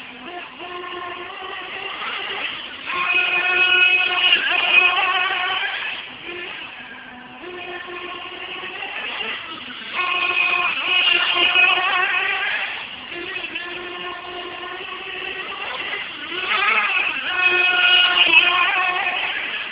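1/8-scale RC late model car running laps, its motor giving a high, steady buzzing note that swells louder three times as the car comes past and fades as it goes round the far end of the oval.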